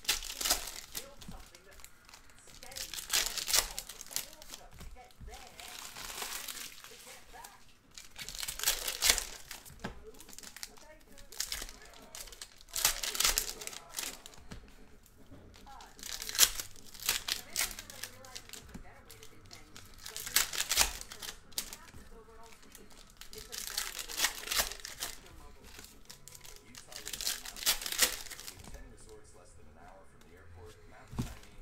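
Foil trading-card pack wrappers crinkling and tearing as packs are ripped open one after another, in loud bursts about every three to four seconds.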